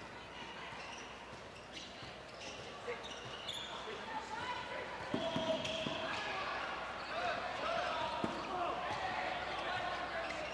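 A basketball dribbled on a hardwood gym floor, with a quick run of bounces about halfway through and one more near the end. Players' and crowd voices carry in the large hall behind it.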